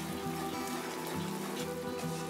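Background music with sustained notes over a soft hiss of sugar syrup boiling and bubbling in an iron wok.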